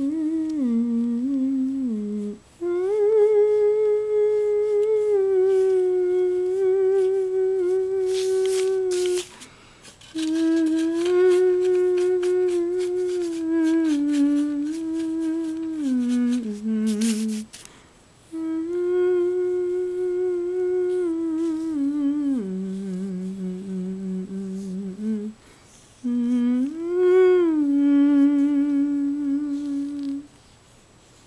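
A voice humming a slow, wordless tune in long phrases of held, gently wavering notes, with short pauses between the phrases.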